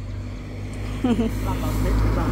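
Road traffic approaching: the engine and tyre noise of a pickup truck and a bus, rising steadily in loudness as they near. A short, faint bit of a voice about a second in.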